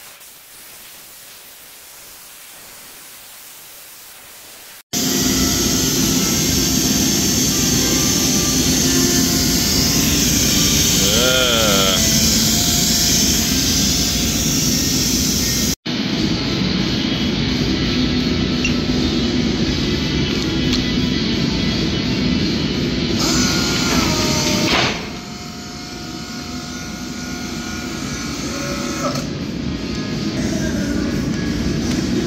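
Steady hiss of a CNC plasma cutter torch cutting steel plate. About five seconds in, loud music cuts in and carries on, with a brief break about midway.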